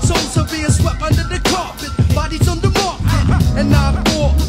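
Horrorcore hip-hop track: rapped vocals over a beat of regular drum hits and a deep bass line.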